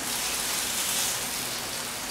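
Chicken thigh pieces sizzling steadily in a hot frying pan.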